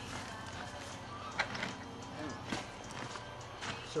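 Dry straw rustling as it is pulled apart by hand and spread over a wet clay-and-sand cob mix in a wheelbarrow, with a few short crackles.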